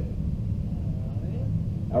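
A steady low rumble fills a pause in speech, with a faint, distant voice in the middle. A man's voice comes in on the microphone at the very end.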